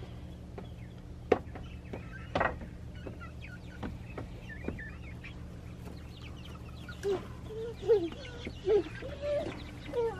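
Young chickens peeping and clucking: thin high peeps throughout, with several louder, lower calls in the last few seconds. Two sharp knocks about a second apart near the start.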